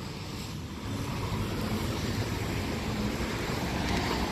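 Road traffic noise: a steady rush of vehicles on a busy street, a little louder from about a second in.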